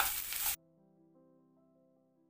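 Diced snake gourd, carrot and onion sizzling as they fry in oil and are stirred in a wok, cut off suddenly about half a second in. Soft, quiet piano-like music follows.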